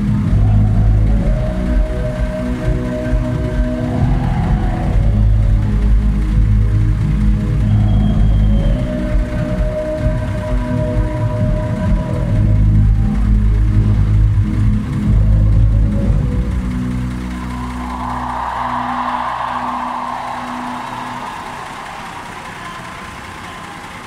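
Loud amplified live concert music with heavy, sustained bass notes, heard through a phone microphone. The music thins out after about sixteen seconds, a brief swell of hazy noise rises and passes, and the sound fades toward the end.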